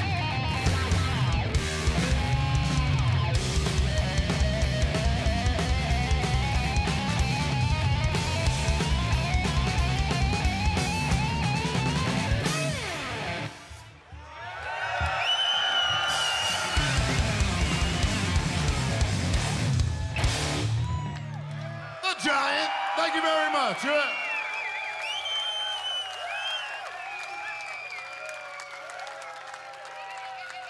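Stoner-rock band playing live: heavy distorted electric guitar from a Les Paul-style guitar, with bass and drums. The music breaks off briefly about halfway, comes back for a final stretch, and ends about two-thirds of the way in. After that the festival crowd cheers and whistles over a low steady hum.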